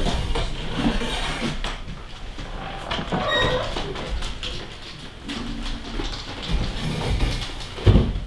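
Shuffling and handling noises in a small office, then a door bangs shut near the end.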